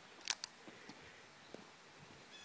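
A quick double click about a quarter second in, followed by a few faint ticks over a quiet background.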